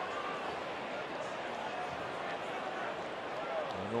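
Steady murmur of a ballpark crowd, many distant voices blending into a constant hum.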